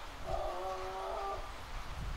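A train whistle: one steady blast of about a second, several tones sounding together.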